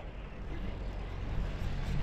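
Steady low rumble of wind on the microphone and tyre noise on asphalt while riding a road bike uphill, growing slightly louder.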